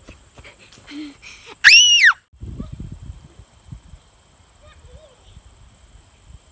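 A young child's loud, high-pitched squeal: a single shriek that rises and falls in pitch over about half a second, a little under two seconds in, as she plays outdoors. Quieter outdoor background follows.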